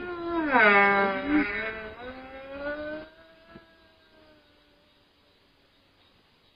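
A long, wavering wailing cry that bends up and down in pitch for about three seconds, then trails off in a thin, fading tone.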